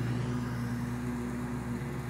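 An engine running steadily at an even speed, a constant low drone with no change in pitch.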